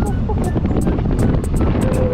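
Background music with a ticking beat over the steady rush of wind and road noise from a moving motorcycle.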